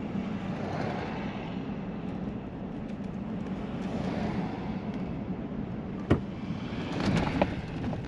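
Car cabin sound while driving: a steady low engine hum with road and tyre noise. A sharp knock comes about six seconds in and a few more follow shortly after, as the wheels cross railroad tracks.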